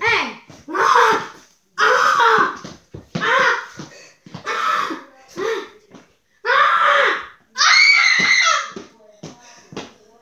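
Children's voices in short bursts of shouting and laughter, with no clear words.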